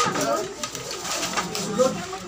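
Several people talking at once, with a few short clinks of serving spoons against plates and dishes.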